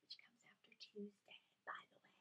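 Faint whispered speech in short, broken fragments.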